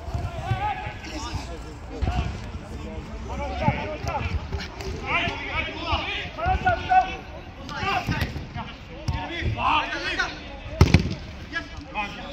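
Men's voices calling and shouting across a five-a-side football pitch, with the dull thuds of the football being kicked on artificial turf; a sharp double thud near the end is the loudest moment.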